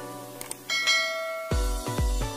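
A quick mouse-click sound effect, then a ringing notification-bell chime as the subscribe bell is clicked, over plucked intro music; about one and a half seconds in, electronic dance music with heavy bass kicks comes in.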